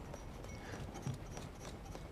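A few faint clicks and knocks of the segment flaps on an electromechanical totalisator digit display flipping up as the unit is worked by hand to change the digit.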